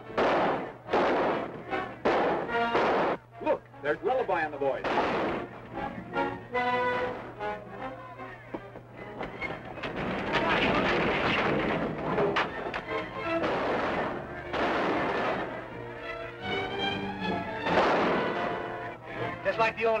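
Repeated gunshots in a gunfight, heard over orchestral film music with brass, the shots coming most thickly in the first few seconds.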